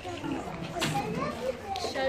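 Children's voices chattering faintly in the background, no one speaking up close.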